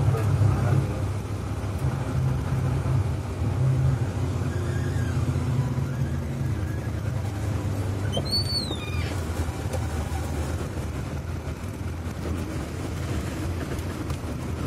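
Vehicle engine and road noise heard from inside the cab, a steady low rumble, with one brief high squeak about eight seconds in.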